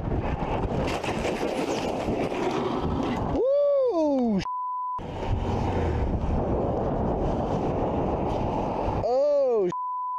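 Steady wind noise rushing over a motorcycle helmet camera's microphone, as the rider slides out and drops the bike on a rain-wet road, with no clear impact heard. Twice a voice cries out, rising then falling in pitch, and each cry is cut off by a one-second censor bleep.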